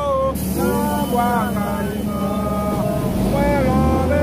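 A man's voice singing a chant in long, held notes, over a steady low rumble of a vehicle engine.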